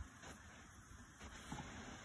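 Near silence: faint background hiss, with one soft brief sound about one and a half seconds in.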